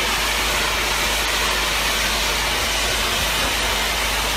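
Powerful water spray hissing loudly and steadily.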